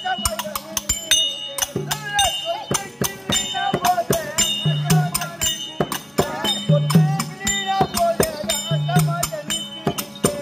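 Live Tamil folk-drama accompaniment: a hand drum and small cymbals or jingles beat a fast, dense rhythm under a wavering melody line, with a low note that comes back about every two seconds.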